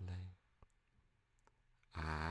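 A man's slow, soft spoken voice: a word trails off just after the start, then a near-silent pause with a few faint clicks, and the next word begins right at the end.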